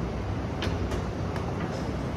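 Seated leg extension machine in use: a few light clicks, three in quick succession from about half a second in, over a steady low background rumble.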